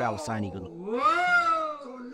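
Mudiyettu performer's voice through a microphone: a few chanted syllables, then one long drawn call that rises and then falls in pitch for over a second.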